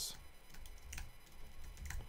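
Faint typing on a computer keyboard: a handful of separate keystrokes.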